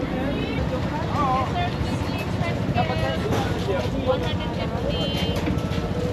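Indistinct voices talking over a steady low rumble of vehicle engines.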